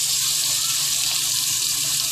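Skirt steak pinwheels searing in butter in a frying pan, sizzling with a steady hiss.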